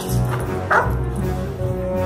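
Background music throughout, with a single short bark from a one-year-old German Shepherd about three-quarters of a second in, as it lunges at the trainer's bite pillow during protection work.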